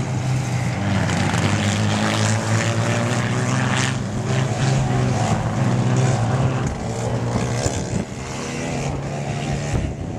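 Modstox stock car engines running as the cars lap a dirt track, a steady engine drone throughout, with engine notes rising and falling in the second half as the cars change speed.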